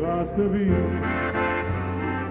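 Live band music with a piano accordion playing, over a steady bass.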